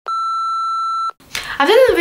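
A single steady electronic bleep tone, about a second long, starting and stopping abruptly in silence, followed by a young woman's voice starting to speak.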